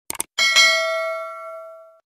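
Two quick mouse-click sound effects, then a bell chime that rings out and fades over about a second and a half: the notification-bell sound of a subscribe animation.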